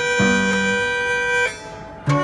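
Mills Novelty Company violano, an antique automatic violin-and-piano machine, playing a tune in held notes. The sound drops away briefly near the end, between phrases.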